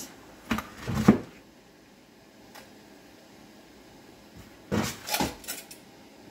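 Metal kitchen tongs clattering and knocking against a bowl of live blue crabs while trying to grab them, in two short bursts: one about a second in and one near the end.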